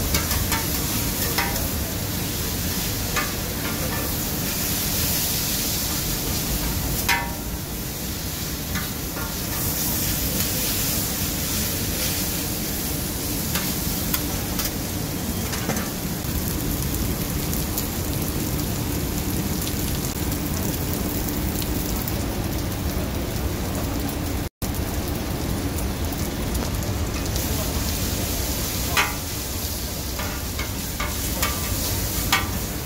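Blood sausage, beef tripe and glass noodles in sauce sizzling steadily on a flat iron griddle while being stir-fried. Metal spatulas scrape and click against the griddle now and then.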